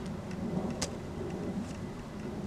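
Steady low outdoor rumble, like distant road traffic, with a single sharp click a little under a second in.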